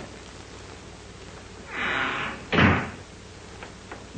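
A door slams shut about two and a half seconds in, a single sharp bang, just after a brief rushing noise.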